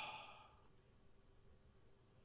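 A man's breathy exhale, like a sigh or soft laugh, fading out within the first half-second, then near silence: room tone.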